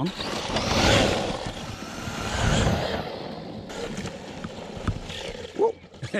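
Arrma Mojave 4S RC truck driving fast over sand and grass: a rushing noise of tyres and motor that swells about a second in and again around two and a half seconds, then eases, with a few light knocks later on.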